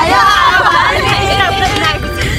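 Several women's voices talking and laughing over one another inside a moving car, with the vehicle's low road rumble underneath.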